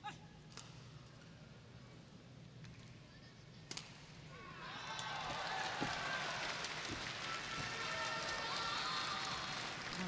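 Badminton rally: sharp racket strikes on the shuttlecock, a few in the first four seconds, then a stadium crowd's cheering and shouting swells from about four and a half seconds in and stays up through the rally.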